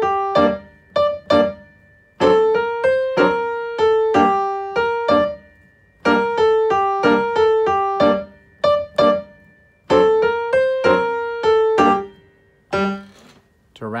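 Upright piano playing a lively tarantella in six-eight time: phrases of quick, detached notes about two seconds long, with short pauses between them and one lone note near the end.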